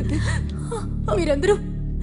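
A woman crying in whimpering sobs, one falling sob about halfway through, over a steady low background music score.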